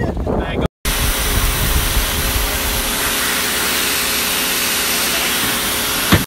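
Pressure washer running, its jet spraying mud off plastic recovery boards: a steady hiss with a faint motor hum beneath it, starting about a second in after a brief silent cut.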